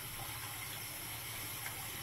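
Bathroom sink faucet running steadily, its stream pouring into water in the sink.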